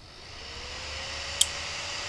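Small cooling fan spinning up after its relay switches it on: a whine rises in pitch over the first second and then holds steady, with a growing rush of air. About one and a half seconds in comes a single sharp relay click as a second channel switches on.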